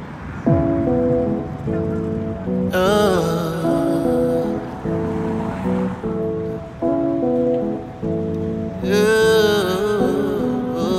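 Background music: a new slow track starts about half a second in, with held chords and a wavering higher melody line that comes in about three seconds in and again near the end.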